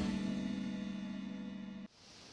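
Closing chord of a TV news channel's intro theme music, a held chord fading slowly after its final hit, then cut off abruptly near the end.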